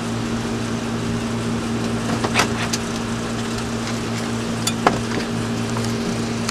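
Car moving slowly, heard from inside the cabin: a steady engine hum with road noise and a few short clicks in the second half.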